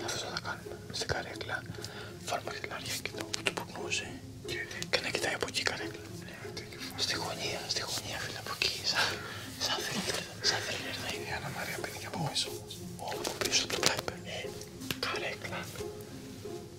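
Whispered conversation between several people, with soft background music underneath.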